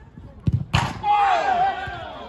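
A football struck hard during play: a dull thump, then a loud, sharp smack about three-quarters of a second in, followed straight away by a man's long shout.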